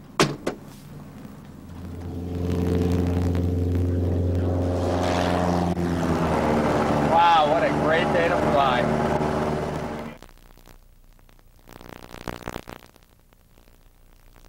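A Cessna 172's piston engine droning steadily, heard inside the cockpit. It rises in about two seconds in and cuts off abruptly at about ten seconds, with a man's voice over it in the middle. A single click right at the start, as a telephone handset is put down.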